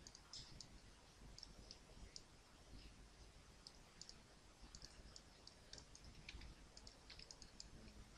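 Faint, irregular clicking of a computer mouse, many separate clicks scattered unevenly through.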